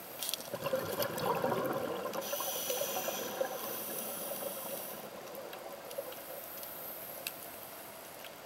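Scuba diver's breathing through a regulator underwater: a gush of bubbling exhaust bubbles about half a second in, then a hiss lasting a few seconds, fading to a quieter stretch.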